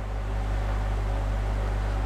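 Steady low hum with an even hiss over it, unchanging throughout, with no distinct events.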